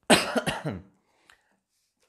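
A man coughing into his hand: a quick run of about three coughs lasting under a second, picked up close by a clip-on microphone.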